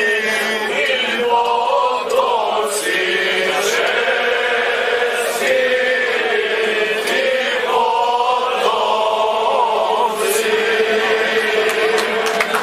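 A man singing a slow folk song to the gusle, the single-string bowed fiddle. He holds long, drawn-out, gliding notes, and twice the voice drops back while a thin wavering melody carries on alone.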